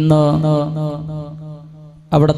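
A man chanting a drawn-out devotional phrase of Islamic salawat recitation in long, slowly wavering notes, trailing off toward the end.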